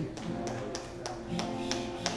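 Acoustic guitar being played: sharp picked or strummed attacks with the strings' notes ringing on between them.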